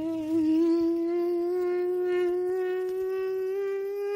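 A person's voice holding one long hummed note that climbs slowly and steadily in pitch.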